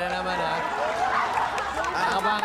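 Several voices shouting and talking over one another, with a dense patch of overlapping voices about a second in.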